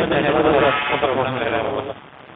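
A voice on a call so garbled and warbling that no words can be made out, cutting off suddenly near the end: the connection is breaking up and the voice is getting stuck.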